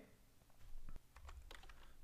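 A few faint computer keyboard keystrokes, scattered clicks over a little over a second.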